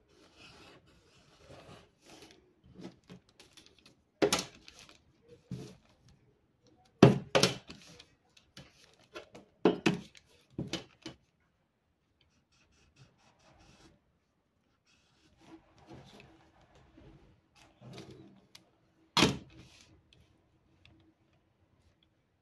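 Felt-tip marker rubbing on pattern paper as it is drawn along a clear plastic curve template, with faint paper rustling and about seven sharp knocks of the template and marker against the table, loudest about seven seconds in.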